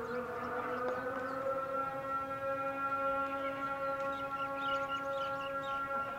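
A siren sounding one long held note, rising slightly in pitch over the first second and then holding steady.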